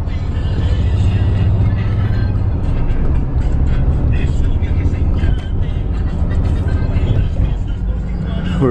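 Steady engine drone and road noise heard from inside the cabin of a moving vehicle: a constant low hum under a wash of tyre and wind noise.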